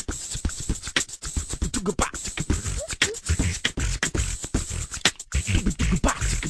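Solo beatboxing: a fast, dense run of mouth-made kick drums, snares and clicks, with short hummed bass notes that slide in pitch, and no backing music.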